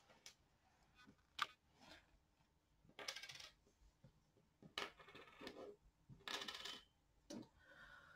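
Faint clicks and rattles of small charm tokens being tipped out and moved around on a table, coming in several short bursts.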